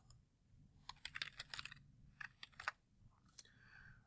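Faint computer keyboard typing: a quick run of key clicks for a couple of seconds, then one or two more keystrokes.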